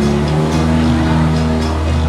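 Motorboat engine running steadily, its low note stepping up slightly just after the start and then holding.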